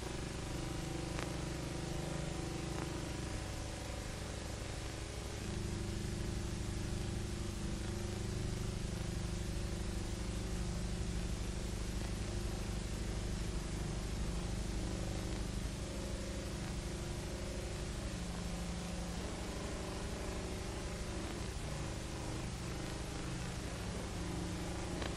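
Steady buzzing tone of a radio homing beacon, heard through a direction-finding receiver. Its pitch shifts a few times, about five seconds in and again later; these pitch variations tell the operator his direction to the beam.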